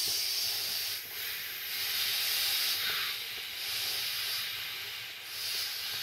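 Breath being blown by mouth into the valve of an Intex airmat: a steady airy rush of air, easing briefly about a second in and again around five seconds in.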